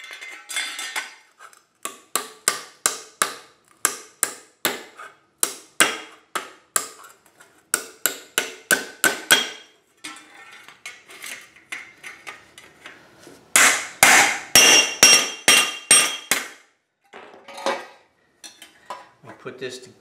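Ball-peen hammer striking a strip of sheet metal over the edge of a metal block, bending it into a flange: a steady run of sharp blows about two to three a second, then after a short lull a burst of louder, ringing blows, and a few light taps near the end.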